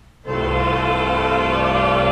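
Church choir and pipe organ coming in together on a sustained chord after a short pause, about a third of a second in, and holding it.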